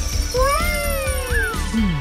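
Cartoon background music with a steady beat, under a high whistle that falls slowly in pitch like a flying-away sound effect. About half a second in comes a high wordless cry that rises and then falls, followed by a short upward squeak.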